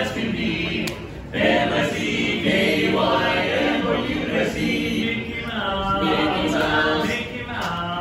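Barbershop quartet of four men singing a cappella in close harmony, holding chords, with a short break about a second in.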